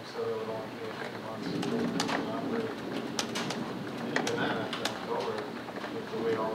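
Indistinct speech from people talking across a meeting room, with a few light clicks partway through.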